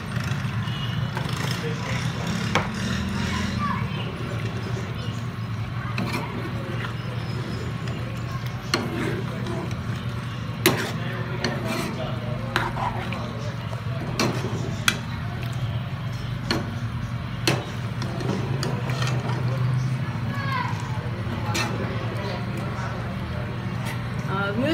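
Metal ladle stirring chicken and capsicum in a pan on the hob, with scattered sharp clicks and scrapes against the pan over a steady sizzle, and a low steady hum underneath.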